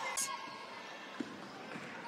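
Faint arena noise from a live basketball game, with a single basketball bounce on the hardwood court about a second in.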